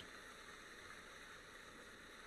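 Near silence: a faint, steady hiss of the recording's background noise.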